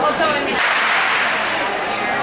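A starting gun fires about half a second in, a single sharp crack that rings on and fades in the reverberant indoor arena.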